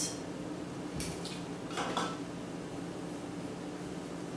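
Spice containers handled over a food processor on a kitchen counter: a few short clinks and rattles, roughly a second apart, over a steady low hum.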